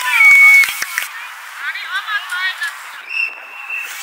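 Young children shouting and calling out to each other in high voices, loudest in the first second. Near the end comes one long, steady, high-pitched call.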